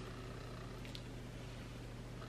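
Quiet room tone with a steady low hum and a faint click about a second in, as fabric is handled.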